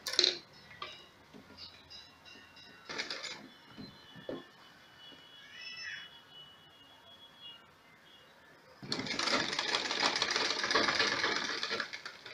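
Sewing machine stitching the hem round the base of a shirt, running for about three seconds near the end. Before that, a sharp click and a few brief handling noises.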